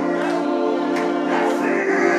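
Gospel music: a choir singing over steady, held organ-like chords, with a light regular tick over the top.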